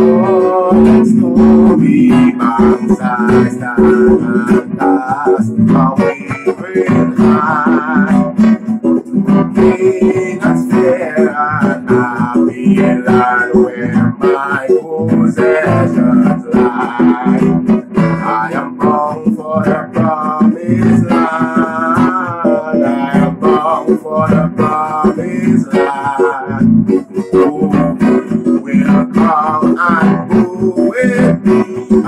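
Acoustic guitar strummed steadily as a hymn accompaniment, with a man singing over it.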